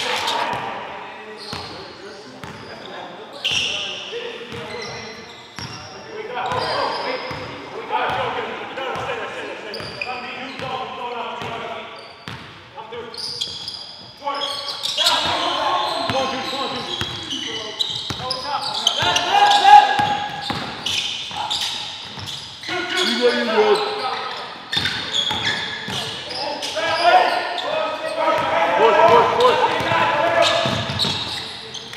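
Basketball game play in a gymnasium: a ball bouncing repeatedly on the hardwood floor under indistinct shouting from players and spectators, echoing in the hall. The voices are loudest about two-thirds of the way through.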